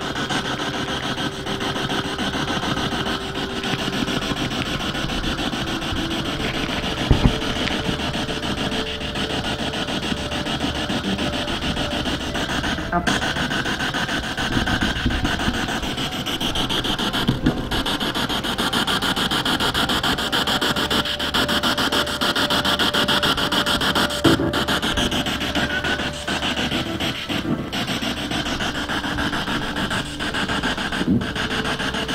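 A P-SB7 spirit box scanning radio stations: continuous loud static hiss, finely chopped as the receiver sweeps, with a couple of sharper pops.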